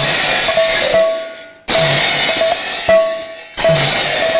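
Pala percussion interlude: a double-headed barrel drum and pairs of large hand cymbals crash and ring together in a loud stop-start rhythm, with a brief break about a second and a half in.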